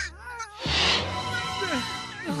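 A cartoon baby Triceratops calling: short squeaky cries that slide up and down in pitch, near the start and again in the second half, over background music. A brief rushing sound effect comes a little after half a second in.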